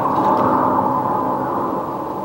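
A steady, fairly loud rushing noise with no clear pitch or rhythm.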